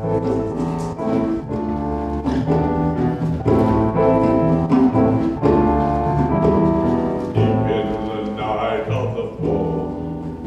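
Live band music starting a song number in a stage musical: an instrumental introduction with pitched notes over a steady bass line.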